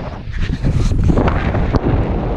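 Strong wind buffeting the microphone of a handheld action camera: a loud, rough rumble that eases for a moment at the start and then picks up again.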